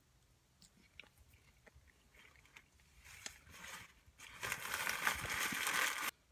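Close-up chewing of a mouthful of bacon, egg and cheese croissant. It starts with faint mouth clicks, then grows into a louder stretch of noisy crunching over the last second and a half.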